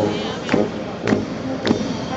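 Brass band playing a march, with a percussion stroke about every half second and low brass notes between the strokes, over a murmur of voices.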